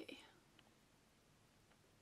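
Near silence: room tone, with two faint ticks, one early and one near the end.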